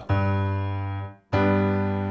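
G major chord with a low G bass note, played on a keyboard with a piano sound. It is struck and held for about a second, then released, then struck again and left ringing as it slowly fades.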